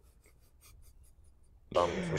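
Near quiet with a string of faint, irregular light scratchy ticks for about a second and a half, then a man's voice begins near the end.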